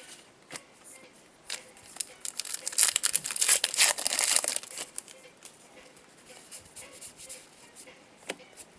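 A trading-card pack wrapper being torn open and crinkled by hand, a loud rustling burst of about two seconds near the middle, with a few soft clicks before and after.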